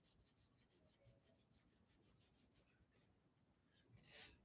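Near silence: room tone, with very faint, rapid, evenly spaced high ticks or scratches during the first two and a half seconds.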